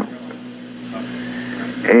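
A pause in a man's recorded speech, filled only by the recording's steady low hum and faint hiss; his voice comes back in just before the end.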